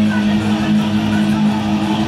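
Distorted electric guitar holding one long sustained note, steady in pitch, with a power-metal tone.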